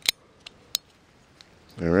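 A few sharp metallic clicks from a Cobra two-shot .22 Long Rifle derringer being loaded and handled, the loudest right at the start and another about three-quarters of a second in.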